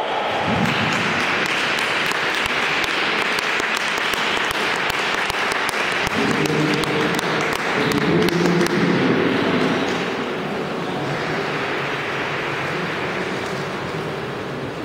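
Spectators applauding with a dense patter of clapping and some voices calling out over it in the middle, dying down over the last few seconds as the bout ends.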